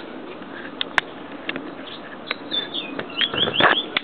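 A bird chirping a quick run of short falling notes about two and a half seconds in, over clicks and a knock from a camera being lifted off its tripod.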